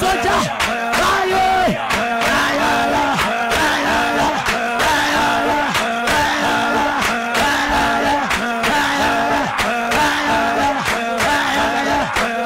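Several voices shouting and crying out together in loud, fervent prayer over background music with a beat.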